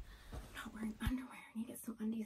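Quiet whispered speech in short fragments.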